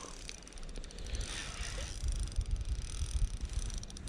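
Spinning fishing reel being wound in on a hooked squid, its gears giving a fine rapid ticking from about half a second in, with low wind rumble on the microphone.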